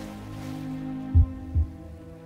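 Meditation music: a sustained drone of several steady ringing tones, with a low, heartbeat-like double thump a little over a second in.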